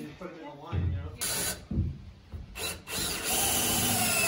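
Cordless drill driving screws into wooden wall framing, fastening a stud: a short run about a second in, a couple more brief ones, then a longer steady run near the end.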